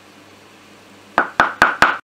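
Four quick, sharp taps in a row, about five a second, starting about a second in over a faint room hum.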